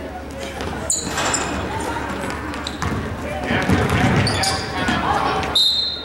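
Gymnasium crowd talk during a basketball game, swelling from about three to five seconds in, with a basketball bouncing on the hardwood floor. Short high-pitched squeaks come near the start and the middle, and a brief high tone sounds near the end.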